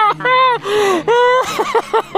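A man's high-pitched, emotional laughter: three drawn-out gasping cries with short breaths between them, the longest in the middle.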